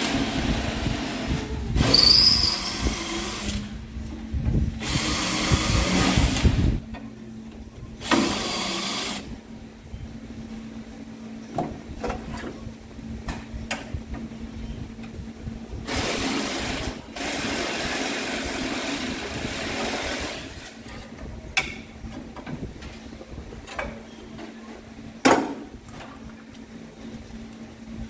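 Cordless drill drilling out spot welds in a steel floor brace, running in several bursts of one to three seconds with pauses between. A few sharp metal knocks come in the second half.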